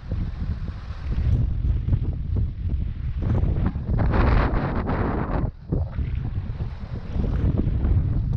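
Wind buffeting an action camera's microphone, a constant low rumble that flutters. About four seconds in, a louder rush of noise swells for a second and a half and then drops away.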